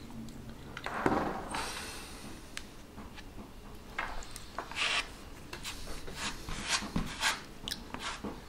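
Two-part wood filler being scooped from its tin and then mixed on a wooden board with a metal filling knife: irregular scraping and squishing strokes of the blade through the paste and across the board.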